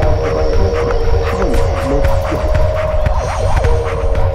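Experimental electro music built on sampled old-school electro vinyl loops: deep bass and a droning hum under a steady beat, with gliding, warbling tones sweeping across it about a second and a half in and again near the end.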